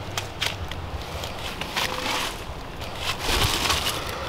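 Irregular rustling and crunching with scattered sharp clicks: handling noise as damp paper and cardboard in a compost bin are moved about.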